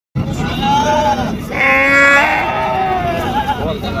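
A single loud bleat from a sheep or goat, about a second and a half in and lasting about half a second, amid people's voices.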